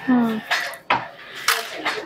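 Small beads clicking and clattering against each other and a plastic compartment box as fingers handle them, a few sharp clicks in two seconds.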